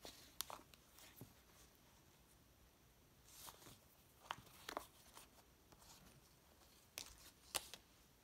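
Near silence, broken by a few faint, brief rustles and taps of paper and string being handled as a junk journal's string closure is tied.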